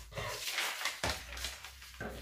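Scissors cutting through brown pattern paper: two crisp cutting strokes about a second apart.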